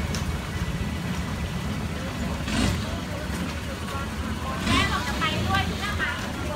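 A tour boat's engine runs with a steady low drone as the boat moves along the canal, and voices talk briefly over it.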